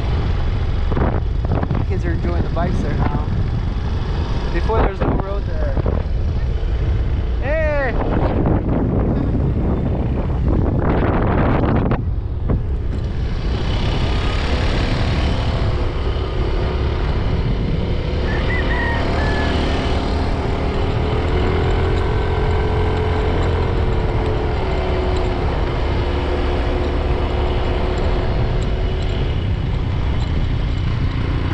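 Motorcycle riding along a road: its engine running steadily under heavy wind rush on the microphone. A few short wavering voice-like sounds come in the first eight seconds.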